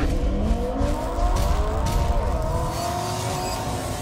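Car engine revving sound effect, its pitch climbing over the first second, then holding steady and slowly fading.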